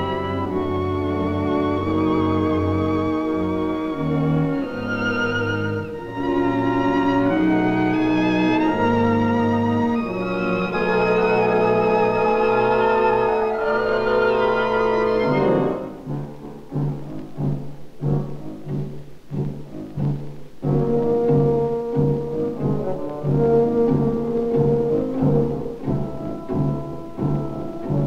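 Orchestral film score on an old optical soundtrack: held string notes with vibrato, then, about halfway through, a quieter passage of short low string notes repeated about twice a second.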